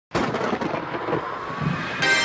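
Thunder sound effect at the start of a song track: a sudden crack, then a rumbling that slowly fades.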